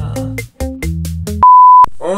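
Upbeat backing music with a steady beat, cut off about a second and a half in by a loud single-pitch beep lasting under half a second, the standard 1 kHz censor bleep.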